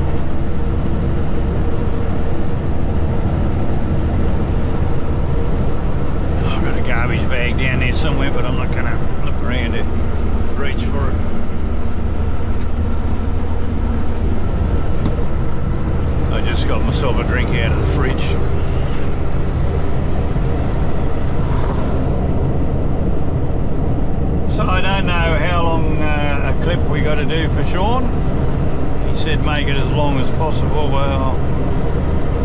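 Truck engine and road noise droning steadily inside the cab at highway cruising speed. A voice comes and goes over it several times.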